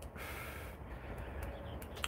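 Faint, steady background noise in a pause between speech, with no distinct event standing out.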